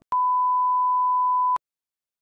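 Broadcast-style test-tone beep: one steady, high, pure tone lasting about a second and a half, switched on and off with a click.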